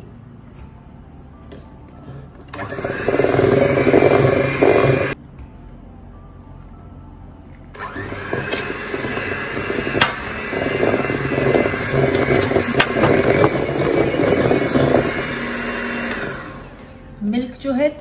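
Electric hand mixer beating flour into thick cupcake batter in a steel bowl. It runs in two bursts: a short one of about two and a half seconds, then, after a pause of a few seconds, a longer run of about nine seconds that stops shortly before the end.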